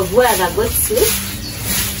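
A broom sweeping the floor in short, repeated strokes, a dry hiss about twice a second, with a voice briefly over the first part.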